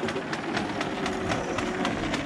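Wall-mounted retractable garden hose reel clicking steadily, about six or seven clicks a second, as the hose runs through its ratchet.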